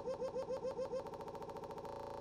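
A tiny slice of a cartoon yell looped as a stutter effect, repeating about seven or eight times a second and then speeding up into a faster buzz in the second half, all fairly quiet.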